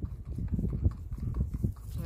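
Hoofbeats of a gaited tobiano horse walking on a gravel driveway: a series of soft, irregular thuds.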